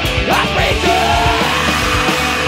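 Live rock band playing loud, with distorted electric guitars and drums; a high line slides up and down in pitch over the chords.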